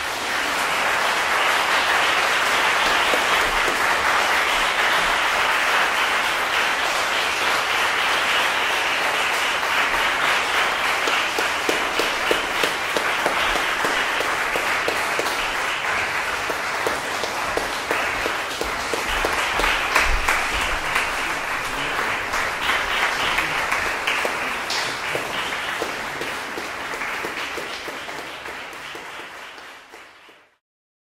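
Concert audience applauding: dense, steady clapping that tapers off over the last few seconds.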